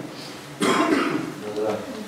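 Someone clears their throat loudly and suddenly about half a second in. Low voices follow, and a spoken word comes near the end.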